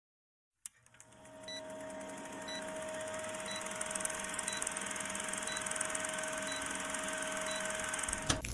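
Old-film countdown sound effect: a steady projector-like whir with crackle, and a short high beep once a second as the numbers count down. It starts with a click and swells in.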